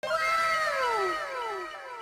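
An added cartoon sound effect: a falling, whistle-like glide that repeats about twice a second, overlapping like an echo and slowly fading.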